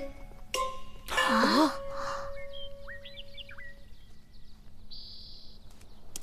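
Background score with a few held, chime-like tones. A short voiced sound, like a sigh or exclamation, comes about a second in, and a few short chirping glides follow.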